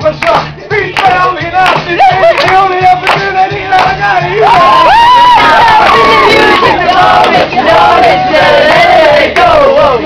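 A group of voices singing loudly along to a pop song, with a long held note in the middle.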